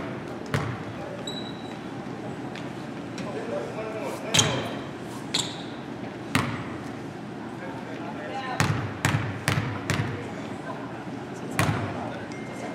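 Basketball bouncing on a hardwood gym floor: a few single bounces, then four quick dribbles about two a second near the end, as a shooter readies a free throw.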